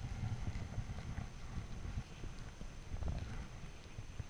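Chairlift ride: a faint, uneven low rumble with scattered light clicks and knocks from the moving chair.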